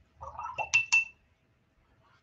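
A paintbrush tapped twice against the rim of a hard painting water cup: two sharp clinks a fraction of a second apart, each ringing briefly at the same pitch, just after a short soft sound.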